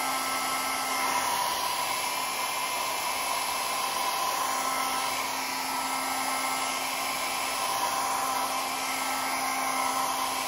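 Small handheld hair dryer running steadily, blowing hot air, with a constant motor hum and whine.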